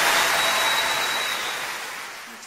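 Audience applause at the end of a live song, fading out over the last couple of seconds.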